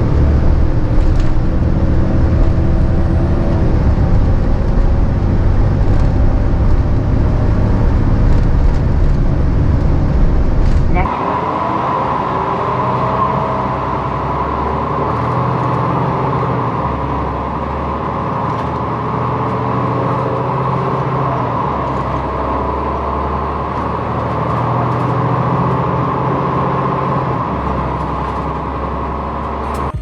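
Orion V transit bus under way: for about the first eleven seconds its Detroit Diesel Series 50 inline-four diesel runs loud with a deep low drone. Then the sound cuts to an Orion V with a Cummins ISL inline-six diesel, quieter overall, with a steady whine over a softer engine note.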